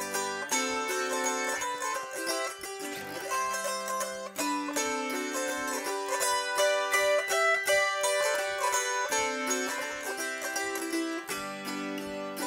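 Autoharp played solo as an instrumental break: a melody picked out over ringing chords, the strings plucked while the chord bars are held, the chord changing every second or two.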